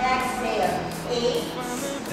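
A woman speaking, giving exercise cues, over background music.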